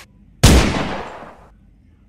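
A single gunshot sound effect about half a second in: a sharp crack with a tail that fades away over about a second.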